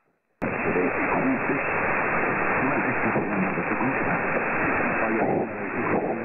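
A weak 783 kHz mediumwave broadcast, tentatively from Iran, received on a software-defined radio in narrow lower-sideband mode: a faint voice almost buried under heavy noise and static, with muffled, narrow audio. Near silence for the first half second, then the signal cuts in abruptly.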